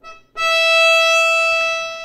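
Violin's open E string bowed as one long, steady note, starting about a third of a second in.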